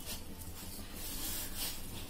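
A hand rubbing and turning a dry, crumbly mix of flour, sugar, khoya and grated coconut in a metal bowl: a soft, scratchy rustling with a couple of brighter swishes.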